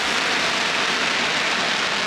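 Audience applauding: a dense, steady patter of clapping between two pieces of show music.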